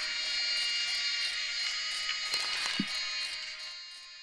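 Film soundtrack of sustained, high ringing tones, like several held musical notes at once, with a brief low sliding sound a little before three seconds in; it fades down near the end.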